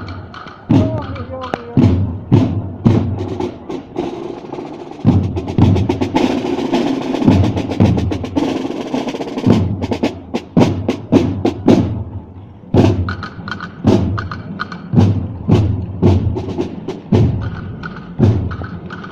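Marching snare drums of a drum corps playing a rhythmic cadence, with a sustained drum roll in the middle.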